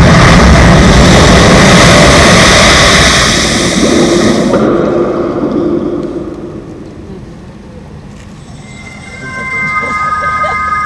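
Soundtrack of a projection-mapping show played over outdoor loudspeakers. A loud, dense rushing rumble fades away over the first half, and near the end several steady high notes come in and hold.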